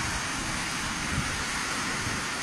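Steady, even rush of water from a flood.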